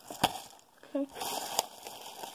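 A sharp tap about a quarter second in, then packaging being handled, rustling and crinkling through the second half.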